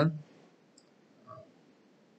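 A man's voice trails off at the end of a phrase, then near silence with a faint tick just under a second in and a faint, brief low vocal sound about a second and a quarter in.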